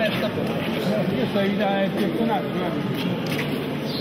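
Indistinct voices of people talking over a steady outdoor background noise.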